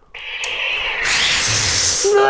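Lightsaber ignition sound: a hiss that swells about halfway through into a loud, bright rush, with a low hum beneath it near the end.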